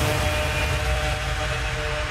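Electronic dance music from a DJ mix: the kick-drum beat drops out right at the start, leaving held synth chords over a low bass rumble, a breakdown or transition between tracks.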